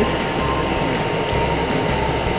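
Steady background hiss with an uneven low hum, and no clear event standing out.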